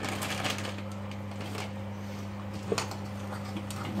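Corn kernels being tipped from a packet into a saucepan, giving scattered light clicks and one sharper knock near three seconds in, over a steady low hum.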